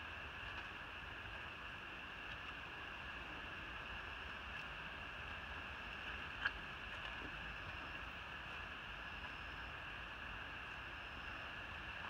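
Steady outdoor ambience: a constant high insect drone over a low rumble, with a single click about halfway through.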